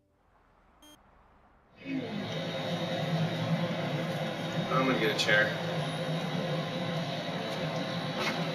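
Near silence, then about two seconds in a steady noisy outdoor background starts abruptly at a cut, with a few brief murmured voice sounds around the middle.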